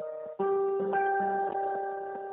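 Telephone hold music: a simple melody of single sustained notes changing about every half second, heard thin through the phone line.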